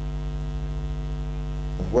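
Steady electrical mains hum: a low buzz made of several even, unchanging tones, with a man's voice coming back in just at the end.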